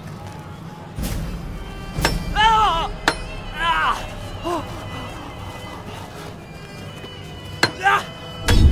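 A film soundtrack: sharp knocks about a second in and again around two and three seconds, with a voice crying out in a few drawn-out cries that rise and fall in pitch, over background music. Another sharp knock comes near the end.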